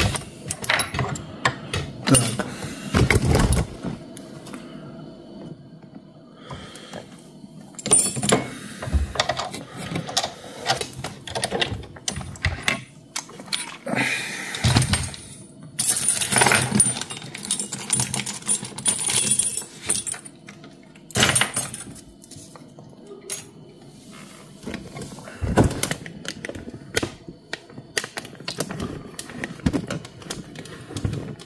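Metal lockpicking tools and a brass lock cylinder being handled and put down on a workbench mat. Irregular clicks, clinks and light knocks of metal come at uneven intervals.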